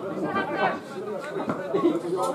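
Several spectators' voices chattering at once, overlapping conversation close to the microphone.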